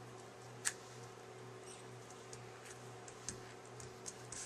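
Quiet handling of cardstock pieces being pressed and shifted on a cutting mat: one sharp click just under a second in and a few soft ticks later, over a low steady hum.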